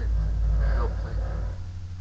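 A low rumble lasting about a second and a half, then it drops away, with a man saying "no" over it.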